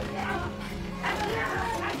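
Movie fight-scene soundtrack: music under men's yells and grunts from the fighters.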